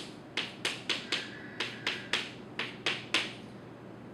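Chalk striking a chalkboard in a quick run of about a dozen short, sharp taps, roughly three a second, as tick marks are drawn along a graph's axes.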